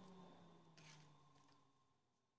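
Near silence: room tone, with a faint low hum fading out in the first second and one faint tick just before the one-second mark.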